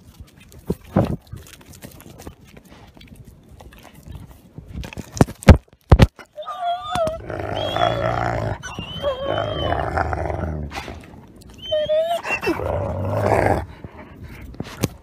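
Young gray wolf at the camera: sharp knocks and clicks against the camera in the first six seconds, the loudest about five and a half seconds in. Then the wolf vocalizes close to the microphone in two stretches of a few seconds, a low growl-like rumble with a wavering higher tone over it.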